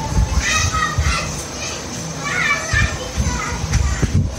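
Children's high-pitched voices, in two short stretches, about half a second in and again just past two seconds, over a low background rumble.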